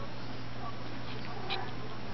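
Two small dogs tussling over a plush toy, with a few brief, faint whimpers and a short sharp sound about one and a half seconds in, over a steady low hum.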